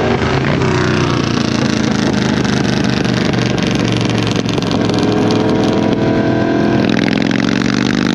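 Motorcycle engines at highway speed from the seat of a sport bike, with steady wind rush. The engine pitch falls over the first few seconds, then rises again in the second half as a Harley-Davidson cruiser pulls alongside.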